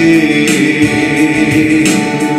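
A man singing a Christian worship song through a microphone, holding a long sustained note.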